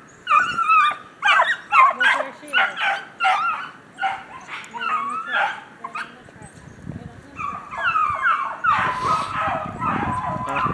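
Beagle hounds baying in short, repeated rising-and-falling cries, several overlapping, as they run a rabbit's scent trail. The cries come thick for the first half and thin out after about six seconds.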